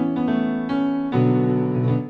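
Digital piano playing three chords in a lilting rhythm, the last one held and then released.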